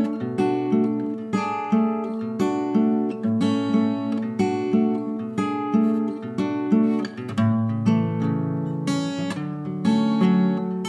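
Acoustic guitar strumming chords in a steady rhythm, with no voice: an instrumental passage of a song.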